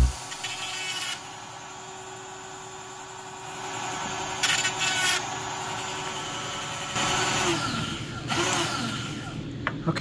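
Battery-powered 12-volt bar-mounted chainsaw chain sharpener running with a steady whine. Its grinding stone touches the chain's cutters in several short bursts from about halfway on.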